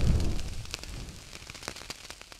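The fading tail of a deep boom sound effect from a logo intro, dying away with scattered crackles and clicks.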